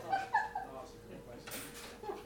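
A person's brief high-pitched vocal sound with two quick peaks near the start, over a faint steady hum, and a short hiss about a second and a half in.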